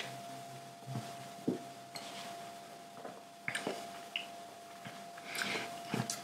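A man sipping from a beer glass and swallowing, with a few faint clicks of glass and mouth sounds, over a faint steady hum.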